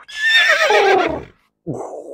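A horse whinnying once, a loud, shaky call that falls in pitch and lasts about a second and a half, followed near the end by a shorter, quieter breathy sound.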